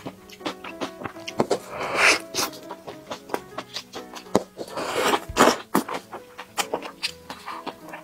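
Close-miked chewing and wet mouth sounds of eating a soft burger, with many sharp clicks and smacks and two louder noisy stretches about two and five seconds in. Light background music with held notes plays underneath.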